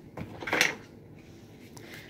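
Small plastic toy boxes and pieces handled on a tabletop, with one short, loud noisy burst about half a second in.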